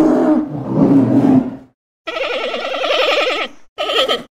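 Cartoon bear roar: a deep, loud roar that ends about a second and a half in. After a short gap comes a higher animal cry with a rapidly wavering pitch, and a brief burst of it near the end.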